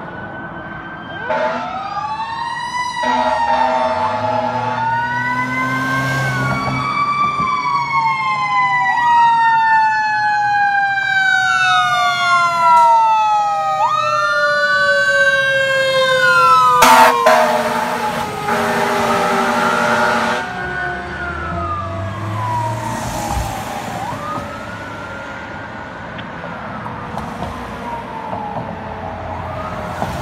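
Fire truck sirens on an emergency response: several wailing tones sweeping up and down over one another, with a long siren tone falling slowly underneath. Short air horn blasts come near the start and again about halfway, when the sound is loudest. The sound then fades as the trucks move away.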